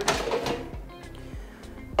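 Innsky air fryer basket drawer pulled out of the hot, preheated unit: a sudden click, then a short sliding sound, over background music.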